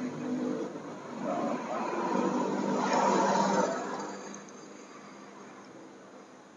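A road vehicle passing by, its sound swelling to a peak about three seconds in and then fading away.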